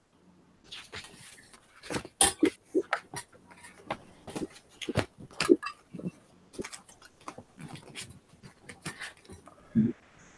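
Sheet music being leafed through and handled close to a microphone: irregular paper rustles, flicks and soft knocks, some sharp.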